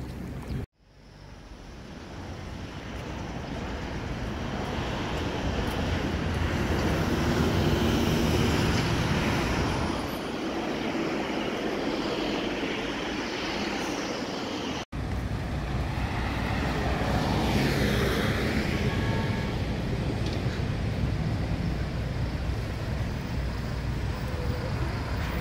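Street traffic going by: a steady wash of car and bus noise. It cuts out for a moment about a second in, then fades back up, and cuts out briefly again midway.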